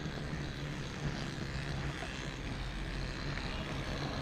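Steady rolling and wind noise of a mountain bike riding along a wet asphalt road, heard from a camera mounted on the bike.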